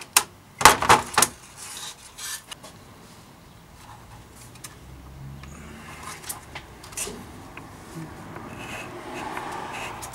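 Hands working a bicycle trigger shifter and its steel inner gear cable: a few sharp clicks and knocks in the first second or so, then quieter rubbing and small ticks as the cable and shifter body are handled. The shifter is gunked up and seized, so the cable will not come out.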